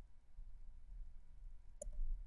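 A single computer mouse click near the end, over a faint low hum of room tone.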